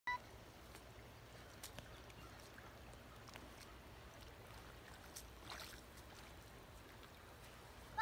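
Near silence: faint background with a few soft clicks, a brief faint rustle about five and a half seconds in, and a short pitched note at the very start.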